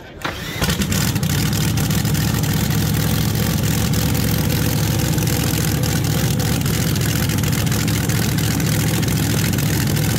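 Supercharged front-engine top fuel dragster's nitro-burning V8 being fired: it catches within the first second and then runs on at a loud, steady idle, the 'kackle' warm-up.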